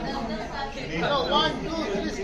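Several people chatting at once, their voices overlapping.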